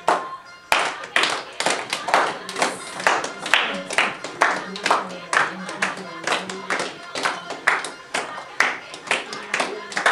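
A group of girls clapping in unison, about two claps a second, the steady handclap beat that drives giddha dancing. The claps start under a second in.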